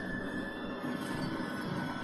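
Scary horror-film intro sound from a promotional website, a dense, noisy, eerie soundscape with a thin steady high tone under it. It screamed at the listener as it started.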